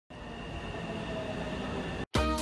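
A train running: a steady rumble with a faint high whine, cut off abruptly at the end.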